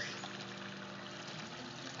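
Faint, steady swimming-pool water trickling, with a low steady hum underneath.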